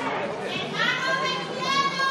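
Two drawn-out, very high-pitched squealing voice sounds, the second trailing downward at its end, over a low murmur of the hall.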